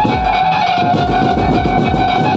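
Loud amplified banjo-party music: a held lead melody line that wavers slightly in pitch over repeated electronic drum-pad hits that drop in pitch, about two a second.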